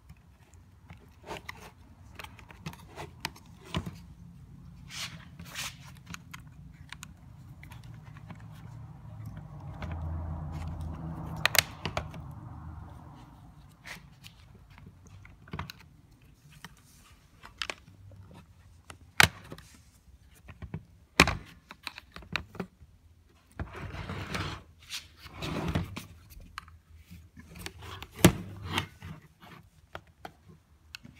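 Small flat-blade screwdriver prying the brittle plastic retaining tabs on the back cover of a Honda Insight Gen1 instrument cluster: a string of irregular plastic clicks and scrapes, with a few louder sharp snaps as tabs pop free and handling noise of the plastic housing.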